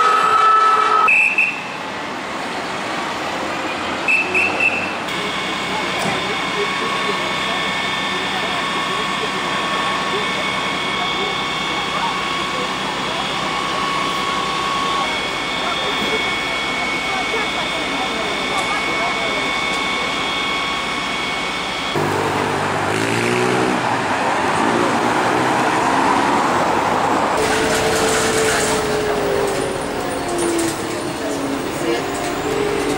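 Fire engines and city traffic: a horn or siren tone cuts off about a second in, then a steady engine hum with high whining tones carries on. From about 22 seconds in, voices over a city bus running.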